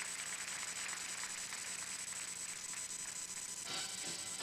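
Steady tape hiss with a thin high whine and a low hum from an old analog video recording. Music starts near the end.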